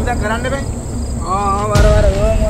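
Crickets trilling steadily behind a wavering, drawn-out melodic line that comes in a little past a second, with a short noisy whoosh of a torch flaring up just before the end.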